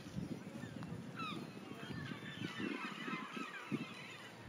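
A flock of birds calling: many short, sliding calls overlapping one another, busiest in the second half.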